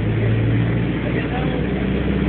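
Bus engine running with a steady low drone, heard from inside the passenger cabin, with faint voices in the background.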